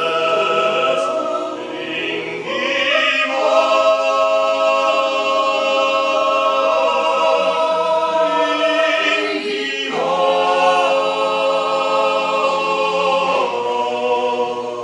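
Mixed chamber choir singing a cappella in long, held chords that change about three seconds and ten seconds in.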